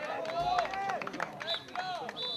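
Raised voices of football players shouting and calling out on an open pitch, the calls high and drawn out, with scattered short knocks.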